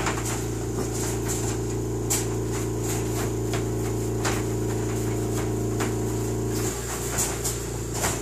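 Steady mechanical hum, which drops away about seven seconds in, under scattered light clicks and rattles of a wire dog pen as a large dog and puppies paw and nose at it through the bars.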